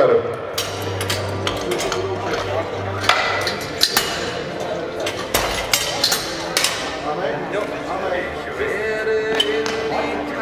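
Iron weight plates and collars clinking and clanking against a bench press barbell as loaders change the weight, over background voices in a large hall.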